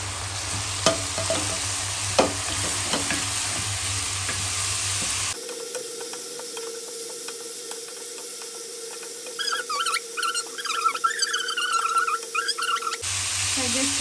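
Red rice fried rice sizzling in a nonstick wok while a wooden spatula stirs it, with sharp clicks and scrapes of the spatula on the pan. About five seconds in the sound changes to a steadier hum with fainter frying. Over the last few seconds a run of high, wavering squeaks comes in, of unclear source.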